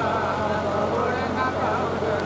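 Devotional shabad singing (kirtan) over a public-address system, with a steady low hum underneath.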